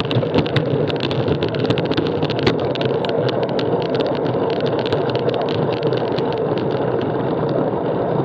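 Steady wind and road noise on a bicycle-mounted action camera's microphone while riding, with frequent sharp rattling clicks over the first five seconds or so and fewer after.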